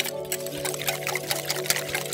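Wire whisk beating a thin milky mixture in a glass bowl: quick repeated ticks of the wires against the glass, several a second, with the liquid sloshing. Steady background music runs underneath.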